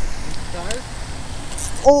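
Steady low wind rumble on the microphone, with a faint voice about halfway through and a loud shout of "Oh!" right at the end.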